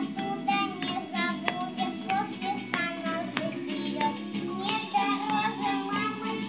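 A children's song: a child's voice sings a melody over instrumental accompaniment, with sharp percussive clicks in the backing.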